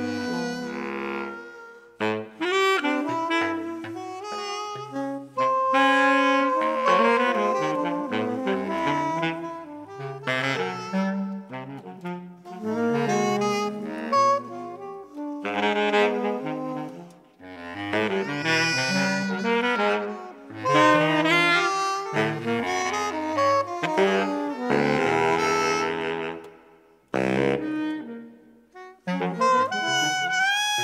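Jazz saxophone playing a line of short phrases over a band, with brief pauses between phrases and a near-silent break about 27 seconds in.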